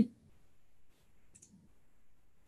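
A single short, faint computer mouse click about halfway through, advancing the presentation slide, against quiet room tone.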